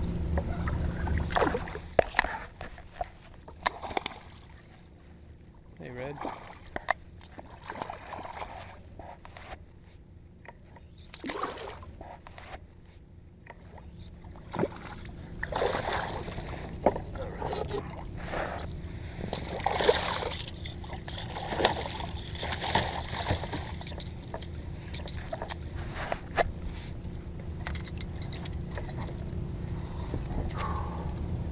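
A hooked redfish thrashing and splashing at the water's surface beside a kayak, in repeated bursts through the middle of the stretch. Scattered sharp clicks and knocks run throughout.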